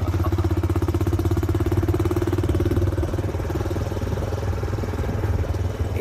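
A small engine running steadily, with a rapid, even firing beat that is a little louder in the first half.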